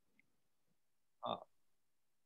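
Near silence: a pause in conversation, broken by one short spoken "Oh" about a second in.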